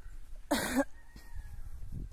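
A person coughing once, a short loud cough about half a second in.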